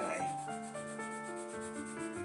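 A graphite pencil scrubbed back and forth on drawing paper under firm pressure, filling in the solid black square of a shading scale. Soft background music with held notes plays underneath.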